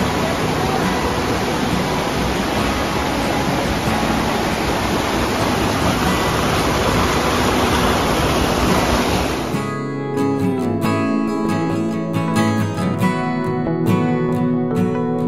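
A fast-flowing snowmelt stream rushing over and around a flooded trail boardwalk, a loud steady rush. It cuts off abruptly about nine and a half seconds in, and acoustic guitar music takes over.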